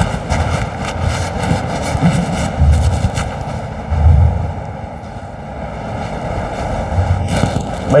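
Steady noise of a large, crowded hall: fans running and a low murmur of audience voices, with a run of faint clicks in the first few seconds.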